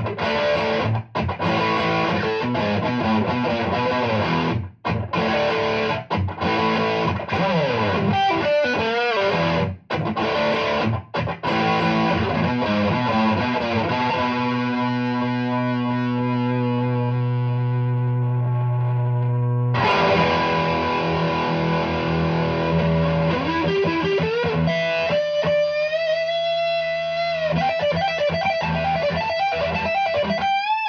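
A Gibson Les Paul Studio electric guitar played through an amp on overdrive, distorted. Chords with short stops come first, then one chord is left ringing for several seconds around the middle and cut off sharply. After that comes a single-note lead line with bends and wide vibrato near the end.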